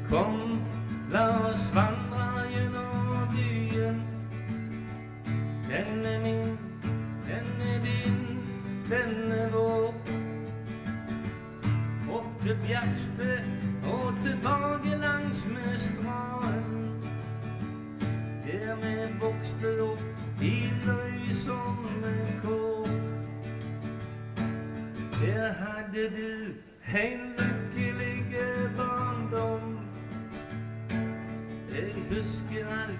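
Live acoustic guitar accompanying a male singer in a country-style ballad, the voice coming in phrase by phrase over the strummed chords.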